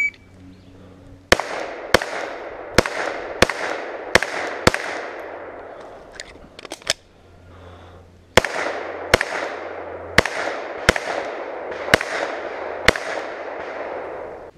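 Glock 34 9mm pistol firing rapid shots, each with a short trailing echo: six shots in about three and a half seconds, a pause of nearly four seconds with a few faint clicks, then about seven more.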